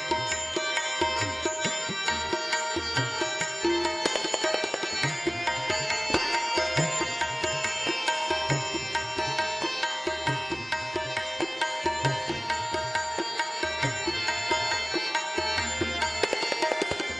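Instrumental passage of live Sikh shabad kirtan, with no singing: a melody on long sustained notes over tabla drum strokes.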